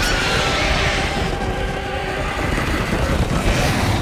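Loud, steady rumbling din of cartoon sound effects with faint music under it.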